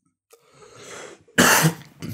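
A man coughing: a drawn breath, then one loud, sharp cough about one and a half seconds in. He is unwell with a cough.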